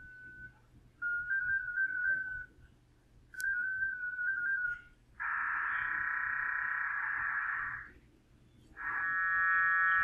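Amateur-radio digital-mode audio from FLDigi sending PSK125R multi-carrier (PSK125RC5), heard from a radio's speaker. Two short warbling single-tone bursts, like the mode-identifying handshake tones, are followed by a wide, even block of many parallel data tones for about three seconds. A stack of steady tones comes in near the end. This wide signal is too wide a bandwidth for acoustic coupling to decode cleanly.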